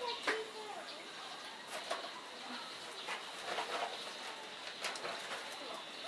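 Faint coo-like bird calls, with scattered short clicks and taps.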